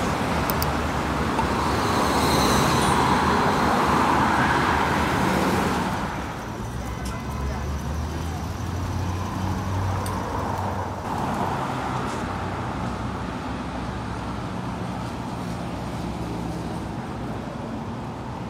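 Road traffic: vehicles running and passing, loudest in the first six seconds or so, with a low engine hum underneath.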